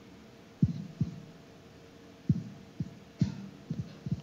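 About seven soft, low thumps at irregular intervals over a faint steady hum in the room.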